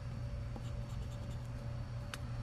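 Edge of a poker chip scraping the coating off a scratch-off lottery ticket, soft and faint, over a steady low hum.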